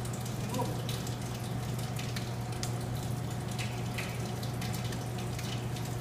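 Wet hands patting and slapping water-moistened masa dough flat into a pupusa, a quick irregular run of soft wet pats, over a steady low hum.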